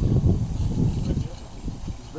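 Wind buffeting the microphone: an uneven low rumble that jumps up at the start and flutters for about a second and a half before easing.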